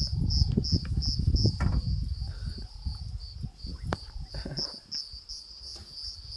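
An insect chirping in a high, even pulse about three times a second, over a low rumbling noise that is strongest in the first half and then fades. A few sharp clicks cut through.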